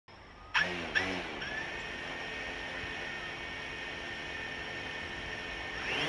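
A small electric motor whining at a steady high pitch with several tones. It starts suddenly twice near the beginning, then rises in pitch right at the end as the propellers spin up.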